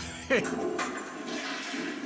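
Toilet flushing: water rushing and swirling down the bowl, starting about half a second in.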